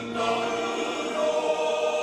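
Men's choir singing a hymn in long held chords, a new chord coming in just after the start and another about a second in.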